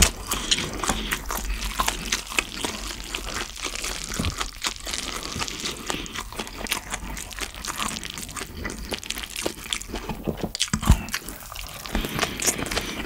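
Close-up chewing and crunching of mouthfuls of yeolmu (young radish kimchi) bibimbap with cabbage and bean sprouts, a dense run of small crisp crackles, with a spoon scooping at the plate. A louder knock comes about a second before the end.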